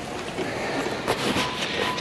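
Camera handling noise: rubbing and a few faint knocks as the handheld camera is swung round, over a steady background noise.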